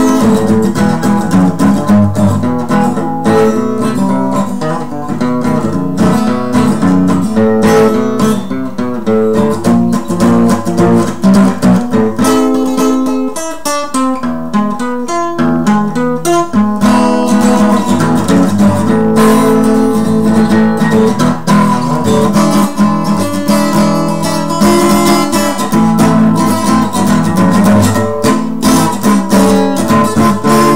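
Steel-string acoustic guitar strummed briskly with a pick, chords changing in a steady rhythm, a little softer for a few seconds near the middle.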